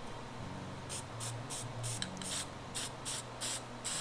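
Aerosol spray-paint can sprayed in a quick series of short puffs, about three a second, starting about a second in, laying down the splash spray at the foot of a painted waterfall. A faint low hum runs underneath.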